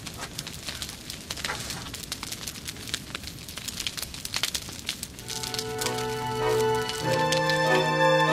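Dense irregular crackling; about five seconds in, music with held organ-like chords comes in and grows louder.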